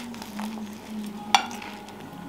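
Someone chewing a mouthful of buttered toast, a faint crunching over a steady low hum, with one sharp click about halfway through.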